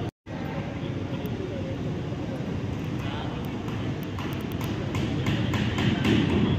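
Indistinct voices and the general bustle of people working, a steady murmur with no clear words. There are a few sharp clicks near the end, and the sound drops out briefly right at the start.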